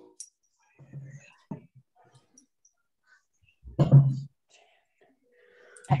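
A person's soft, breathy vocal sounds during a slow sit-to-stand exercise: a few faint breaths early on, then one short, louder voiced exhale about four seconds in.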